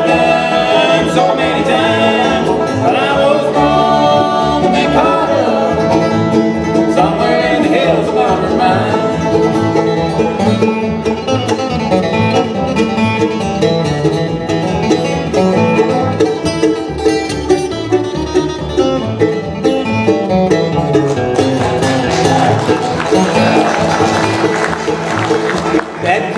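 Live bluegrass band playing an instrumental break at a fast tempo: banjo, acoustic guitar, fiddle and upright bass.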